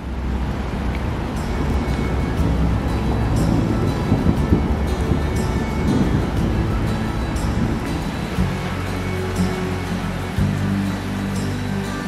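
Background music fading in: a dense wash of sound with a light tick about once a second, settling into sustained low notes after about eight seconds.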